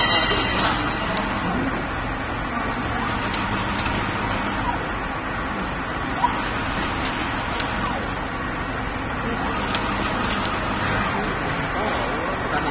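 Conveyor donut fryer at work, making a steady running noise with a faint low hum as donuts fry in its oil. Scattered light clicks, with one sharper click about six seconds in.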